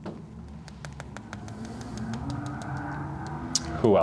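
Dry-erase marker on a whiteboard, a rapid series of light clicks and taps as short marks are written. A faint drawn-out voice sounds in the second half.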